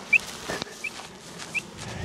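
A short, high chirp repeating at an even pace, about once every 0.7 seconds, with a faint click about half a second in.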